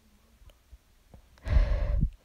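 A person's short breath out, like a sigh, about one and a half seconds in, lasting about half a second.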